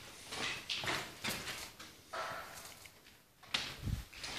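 Footsteps and rustling handling noise on a handheld phone moving through a room, irregular scuffs and clicks, with a sharp knock and a low thud near the end.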